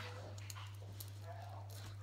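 A steady low hum with a few soft clicks, likely fingers handling a fidget spinner, and a brief faint, high voice-like sound just past the middle.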